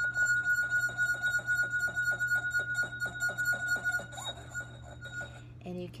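Champagne flute singing as a vinegar-wetted fingertip rubs around its rim: one steady, very high-pitched tone that stops shortly before the end. The vinegar on the finger gives the friction that sets the glass vibrating.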